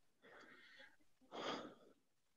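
Near silence with a person's faint breathing: a weak breath, then a stronger one drawn in about a second and a half in.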